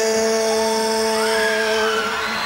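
Male rock vocalist holding one long sung note at a steady pitch, live through the PA, over sparse backing.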